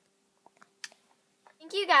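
Near silence with a faint steady hum and a single short click about halfway through, then a girl's voice begins speaking near the end.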